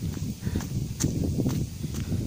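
Footsteps on a dry, sandy dirt trail: irregular scuffs with a few sharp ticks.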